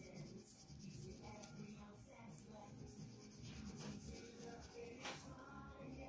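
Wax crayon colouring on paper, faint back-and-forth strokes.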